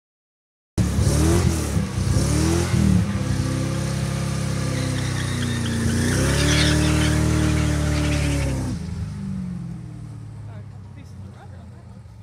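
Corvette Z06 and Fox-body Mustang drag-racing street cars revving at the line: two quick revs, then a sustained, louder run of engine noise as they launch, dropping off sharply about nine seconds in as they pull away.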